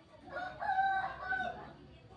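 A rooster crowing once, a single call of about a second and a half that begins about a third of a second in.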